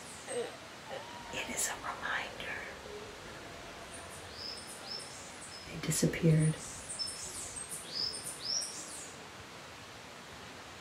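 Bird chirping outdoors: a run of short, high, falling chirps in the second half, over a faint steady background hiss.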